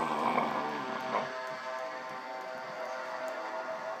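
Electronic keyboard T-shirt's small built-in speaker sounding a held synthesizer chord that slowly fades.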